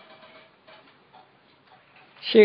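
Faint room tone in a pause in speech, with a few soft, irregularly spaced clicks.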